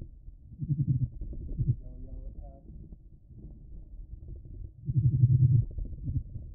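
Abdominal vibration signals of displaying male Phidippus clarus jumping spiders: rapid, low buzzing pulse trains, in a bout about a second in and a longer, louder one about five seconds in, with fainter pulsing between.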